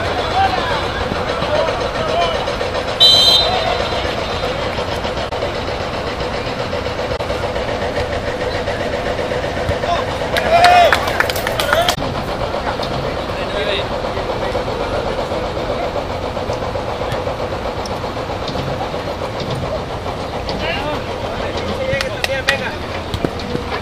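Football players calling out and shouting during a small-sided match, over a steady background rumble of road traffic. A short high whistle blast sounds about three seconds in, and a loud shout comes near the middle.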